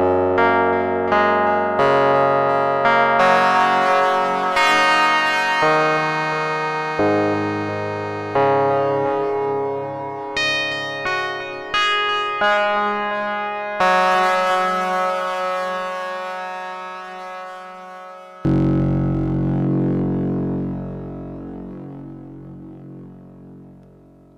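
Ensoniq ASR-10 sampler playing sustained chords on the saw-style waveform B21 through dual delays. Chords are struck about once a second, each fading away, and the timbre shifts side to side with the mod wheel. A last, lower chord comes in near the end and slowly fades out.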